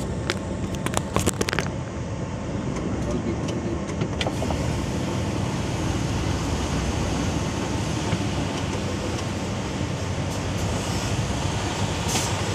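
Steady low rumble of the engine and running noise inside a Mercedes-Benz truck cab. A few sharp clicks and knocks in the first second or two as the phone filming it is handled.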